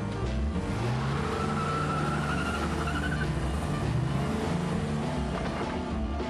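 Car engine revving up, with a tyre squeal for about two seconds from roughly a second and a half in, over background music.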